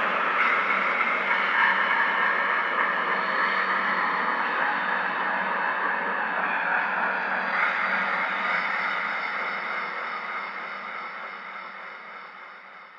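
Closing bars of a dark psytrance track with the kick and bass gone: a dense, hissing noise drone with faint held tones above it, slowly fading out.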